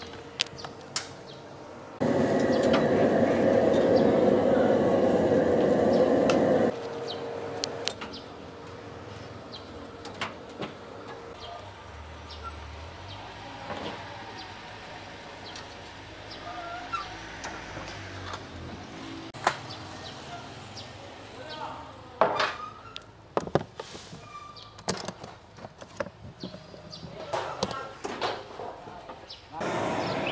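Stainless steel food trays clattering and knocking as they are set down on a stall table, in scattered sharp strikes that gather near the end. About two seconds in, a loud burst of other sound starts and stops abruptly after some four seconds and is the loudest thing heard.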